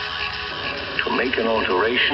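Breakdown in a breakbeat track: a thin music bed without the heavy bass, and a spoken vocal sample that comes in about a second in.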